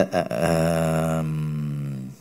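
A man's voice holding a drawn-out hesitation sound, an "ehhh" on one level pitch, for about a second and a half.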